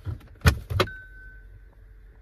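Glovebox latch of a Changan Ruicheng PLUS being pulled open: two sharp clicks about a third of a second apart as the catch releases and the lid drops open, with a faint high ring after the second click.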